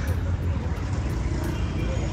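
Steady low outdoor background rumble, the kind of sound distant road traffic makes, with faint voices.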